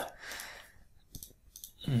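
A soft breath out, then a couple of short computer mouse clicks as the user switches windows with the mouse.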